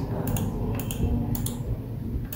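A handful of short, sharp clicks from a laptop's pointer buttons being pressed to click through the screens: a quick pair near the start, one just before a second in, and another quick pair about halfway through.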